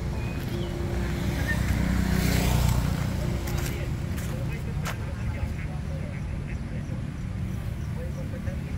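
Street traffic: a vehicle passes on the road, swelling to a peak a couple of seconds in and fading, over a steady low rumble, with a sharp click about five seconds in.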